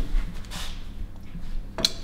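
Quiet room tone with a low steady hum, a faint rustle about half a second in, and one short sharp click near the end.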